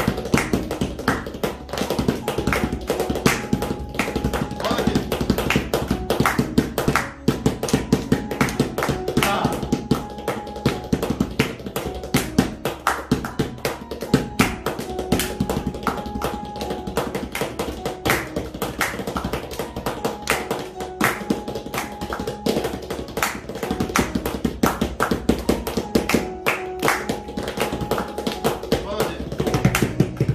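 Indian trio rehearsal: tabla and a hard-shell instrument case struck with the hands as a drum, playing dense, fast strokes, with an electronic keyboard playing a melody of held notes over them.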